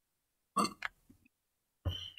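Two brief throat noises from a man, about a second and a quarter apart, with silence between them.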